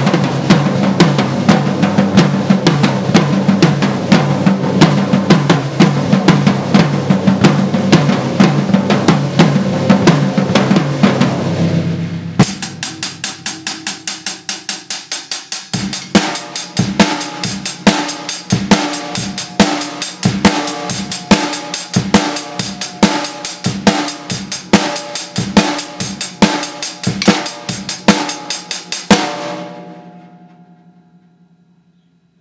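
Acoustic drum kit played: a fast, dense beat with hits following one another nonstop, breaking off about twelve seconds in. Then a sparser, even beat of snare, bass drum and cymbal strokes that stops just before the end, leaving a cymbal ringing.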